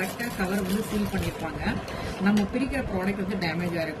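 Speech: a woman talking throughout.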